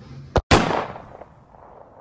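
A sharp click, then a loud bang about half a second in that fades away over about a second.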